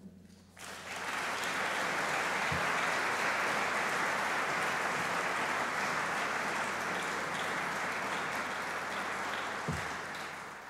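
Large audience applauding in a hall, starting about half a second in and holding steady, easing a little near the end.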